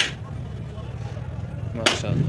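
Metal ladle clinking twice as biryani rice is scooped from a large cooking pot onto a plate, two sharp knocks nearly two seconds apart over a low steady hum.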